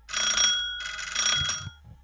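A doorbell chime rings twice, two bell-like rings under a second apart, each fading out.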